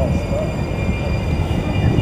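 Steady low rumble of a packed tram running, heard from inside the car, with faint passenger voices.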